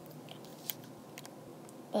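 Faint, scattered clicks of small plastic Lego pieces being handled, one a little louder about two-thirds of a second in.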